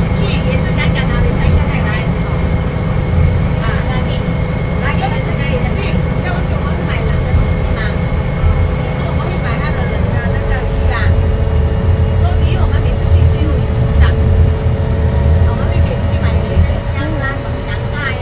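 Inside a moving tour bus: the steady low rumble of the engine and road, with a drone that drops slightly in pitch about halfway through. Faint talking of other passengers runs underneath.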